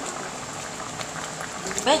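Coconut milk simmering in a frying pan with pieces of fried tilapia: a steady bubbling hiss with small pops.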